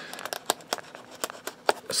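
Folding knife slitting the plastic shrink-wrap on a sealed trading-card booster box, a string of small, irregular clicks and crackles.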